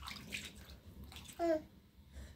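Water splashing in a bowl as a hand rinses in it, then a baby's short babble about one and a half seconds in.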